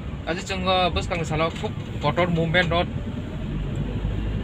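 Steady low rumble of a moving car heard from inside the cabin, under a man talking.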